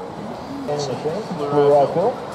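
A man's voice calling out twice in short bursts, cheering a surfer on, over a steady background rush.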